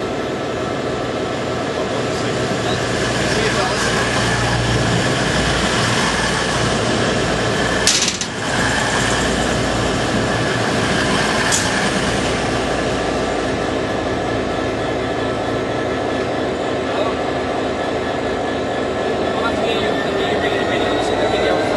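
Class 66 diesel locomotive's two-stroke V12 engine idling steadily while it stands, with another train passing close by; a sharp crack about eight seconds in and a smaller one a few seconds later.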